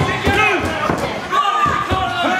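A referee's hand slapping the wrestling ring mat during a pin count, as sharp slaps under a crowd of voices shouting.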